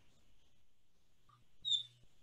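Near silence on a video call: faint room tone with a low hum, then a brief high-pitched squeak near the end.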